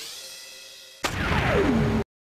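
Synthesized intro sound effects for a news logo sting. A rising sweep fades away, then a sudden hit comes about a second in, with a tone gliding down in pitch to a low hum that cuts off abruptly.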